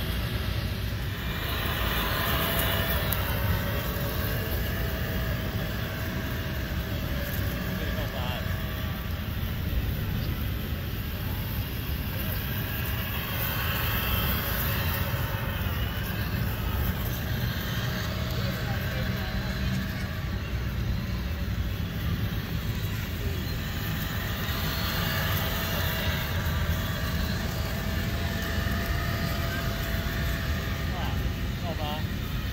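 Electric motor and gears of a 1/10-scale RC crawler whining faintly as it drives through sand, over a steady bed of outdoor noise with distant voices.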